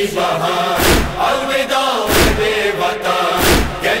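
Urdu noha (Shia mourning lament) chanted by male voices in chorus, over a steady deep beat that falls about every 1.3 seconds, three times here.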